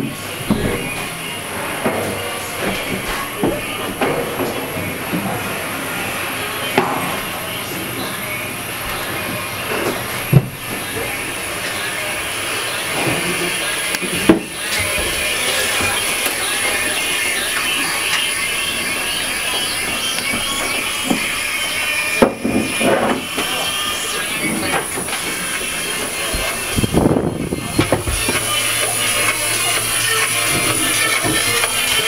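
Workshop background noise: a steady hiss with a thin high whine, scattered knocks and clatter, and music and voices mixed in the background.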